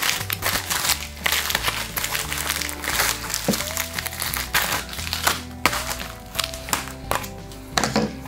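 Plastic postal mailer bag crinkling and rustling as it is slit with a knife and torn open by hand, in many quick crackles, over steady background music.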